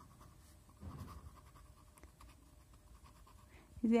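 Faint scratching of a pen on paper as a word is handwritten, with a louder run of strokes about a second in.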